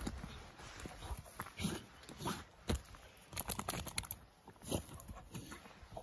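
A Labrador retriever rolling and wriggling on its back in grass, giving a string of short squeaking noises among the rustle of its body on the turf.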